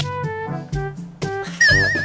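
Light, playful background music with short separate notes over a steady bass line. Near the end a louder warbling, wavering high-pitched comic sound effect cuts in over it.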